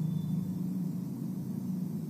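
Steady low hum with a faint hiss of room noise, no speech.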